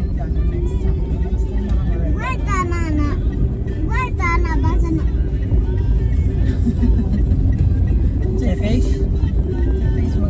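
Steady low rumble of a moving road vehicle heard from inside, with short bursts of a high, gliding voice or music over it about two and four seconds in.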